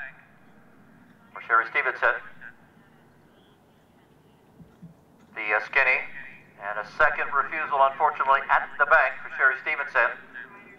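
A man's commentary speech: one short phrase a little over a second in, then continuous talk through the second half, with a quiet gap of faint background noise between.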